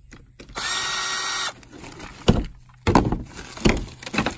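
Cordless drill with a nut-driver bit running in one steady whine for about a second, loosening the screw of a stainless worm-drive hose clamp on a PVC pipe fitting. A few sharp knocks follow in the second half as the fitting and bag are handled.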